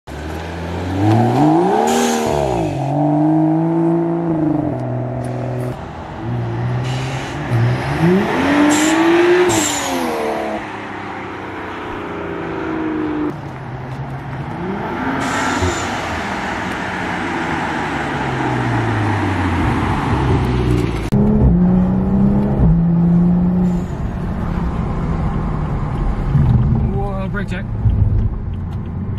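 A tuned BMW M235i's turbocharged straight-six accelerating hard several times, its pitch climbing and then dropping at each shift, with short bursts of noise at the shift points. Near the end it settles to a steadier drone.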